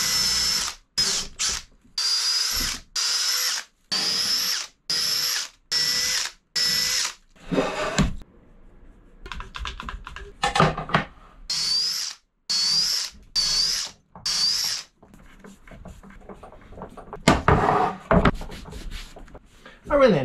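Cordless drill/driver working into a wooden mounting block, run in short bursts of under a second, each spinning up with a rising whine. About ten bursts come in quick succession, then a short pause, then about five more. A louder knock comes near the end.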